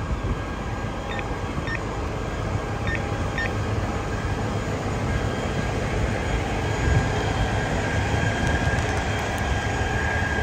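Diesel engines of parked fire apparatus running steadily, a low rumble with a steady whine over it, slowly growing louder. A few short beeps sound in the first few seconds.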